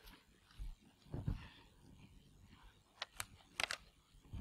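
Faint room handling noises: a low muffled bump about a second in, then a few sharp clicks near the end.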